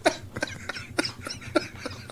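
Men laughing quietly in short breathy huffs, a string of soft bursts a few times a second.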